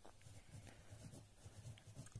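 Faint short scratches of a pen writing on notebook paper.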